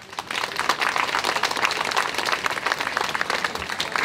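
Audience applauding: many hands clapping in a dense, steady patter that starts just after a brief pause.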